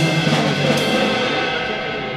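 Funk band playing live in a small stone cellar: a few drum hits near the start, then held chords ringing on and slowly fading, like a pause in the groove.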